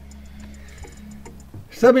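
Quiet room with a steady low hum and a few faint ticks, then a man's voice begins near the end.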